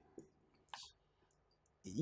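A very quiet room with a couple of faint clicks and one brief scratch about three-quarters of a second in, typical of a marker pen writing on a whiteboard.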